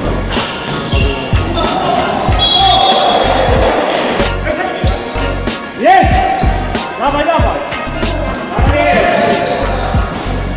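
A basketball bouncing on a gym floor again and again, with short squeaks and players' voices echoing in a large hall. Music with a steady low beat plays underneath.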